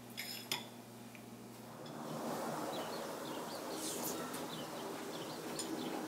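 A couple of light clinks, like chopsticks against a ceramic bowl, just after the start, then faint birds chirping over a soft outdoor hiss.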